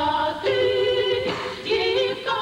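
A group of voices singing a melody together, holding long notes and moving to a new note twice.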